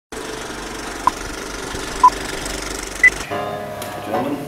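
Film projector sound effect over a countdown leader: a steady rattling run with three short beeps about a second apart, the third higher-pitched. The rattle cuts off a little after three seconds in and music begins.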